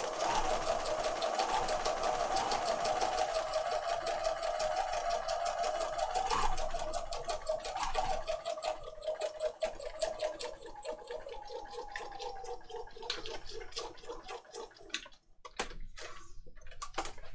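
Electric sewing machine running a straight stitch through card, the needle strokes fast and even at first. In the second half they slow to separate strokes, and the machine stops near the end.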